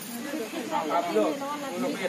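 Several people talking indistinctly at once, over a steady hiss.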